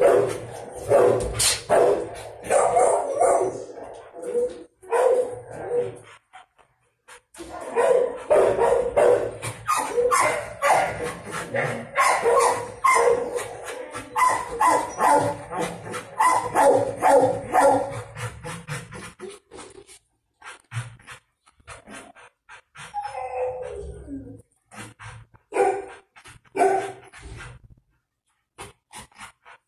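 Dogs in a shelter kennel barking repeatedly, with a short lull about six seconds in and sparser barks in the last third.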